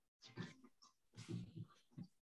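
Near silence on a video call, broken twice by faint, brief voice sounds, about half a second in and again just past the middle.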